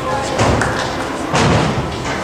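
Two heavy thumps about a second apart from a gymnastics high bar as a gymnast swings giants around it, over a background of voices in the gym.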